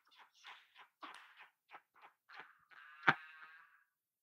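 Hard, nearly silent laughter: a string of short, faint wheezing breaths, rising near the end into a brief high-pitched squeal. About three seconds in there is a single sharp smack, the loudest sound.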